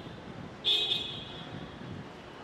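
A short vehicle horn toot, sudden and loud, about half a second in, dying away within half a second over steady background traffic noise.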